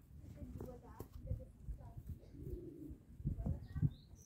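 Thin wicker rods rustling and knocking against each other as baskets are woven by hand, with a few sharp taps, the loudest near the end, and faint voices in the background.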